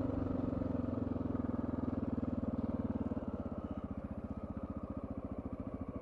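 Honda XR650L's single-cylinder four-stroke engine running under way with a steady, evenly pulsing exhaust beat. It gets slightly quieter after about three seconds.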